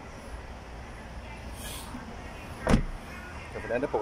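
A car door on a Mercedes-Benz E240 shut once with a single loud thump about two-thirds of the way in, after a brief rustle, over a steady low hum.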